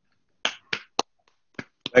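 A few short, sharp clicks, about five, unevenly spaced, the loudest about a second in, heard over a video-call line.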